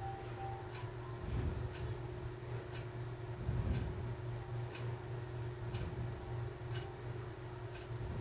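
A clock ticking steadily, about once a second, over a steady low hum, with soft handling noises of fabric being folded and pinned on a table.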